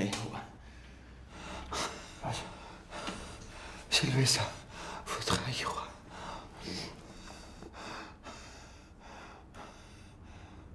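A person's breathing, with repeated gasps and short voiced sounds at irregular intervals, the loudest about four seconds in.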